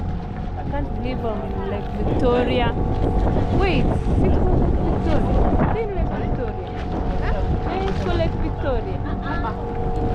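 A motorboat under way: the engine runs steadily under rushing, splashing water along the hull, with wind buffeting the microphone.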